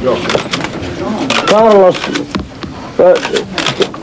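Voices talking: speech the recogniser did not write down, with no other distinct sound.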